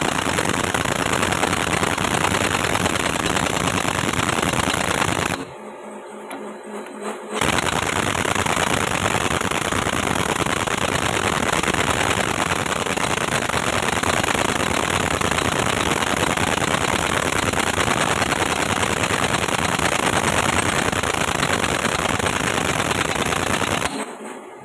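Heavy-duty impact wrench hammering continuously on the nut of a puller bracket, working against the heavy load of a power cell stuck in a rock breaker's frame. It stops for about two seconds around five seconds in, then runs again.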